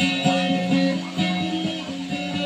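Guitar picking a repeating accompaniment pattern, about four notes a second, with low notes ringing on underneath.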